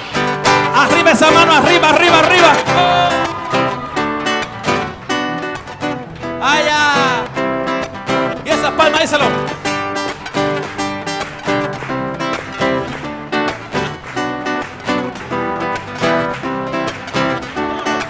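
Live band music: acoustic guitar, electric bass, violins and cello playing an upbeat song, with voices shouting over it in the first couple of seconds and again about seven seconds in.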